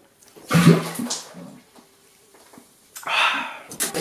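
A man drinking from a large glass cylinder of Red Bull makes a loud voiced gulping sound about half a second in. Near the end Red Bull pours into the cylinder with a short splashing rush.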